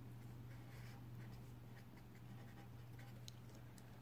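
Faint scratching of a pen writing on paper in several short strokes, over a steady low hum.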